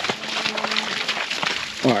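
Footsteps squelching through wet mud, with scattered knocks. A faint, low, steady tone sounds underneath for about a second and a half.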